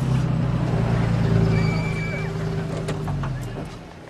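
A vehicle engine running with a steady low hum that swells and then fades away near the end.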